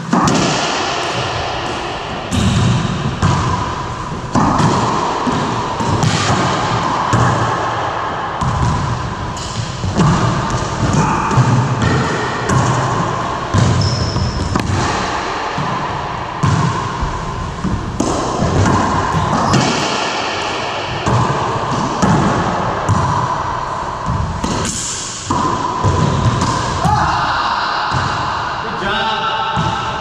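Racquetball rally: the rubber ball smacking off racquet strings, the front and side walls and the hardwood floor again and again, each hit ringing in the enclosed court's echo.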